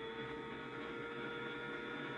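Faint, steady engine drone of a Kawasaki ZX-6R 636 in onboard track footage, heard through a TV's speakers.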